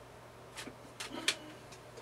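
A few sharp clicks and knocks as a camera matte box is handled and fitted back onto the rig's rods, the loudest a little over a second in.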